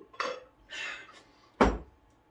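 Short breathy sounds as a chugged drink is finished, then a heavy glass beer mug set down on the bar top with one loud clunk about a second and a half in.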